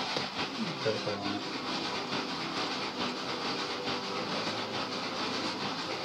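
Steady background hiss, with a brief murmur of a voice about a second in.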